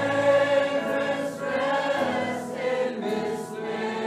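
A choir singing a slow worship song, the voices holding long notes.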